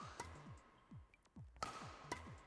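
Faint background music with a steady beat, with a few sharp cracks of a badminton racket striking the shuttlecock, the clearest about one and a half seconds in.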